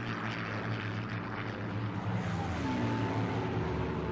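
Second World War propeller fighter planes droning steadily as they fly past, with a rough, noisy engine sound. Faint held musical tones begin to come in near the end.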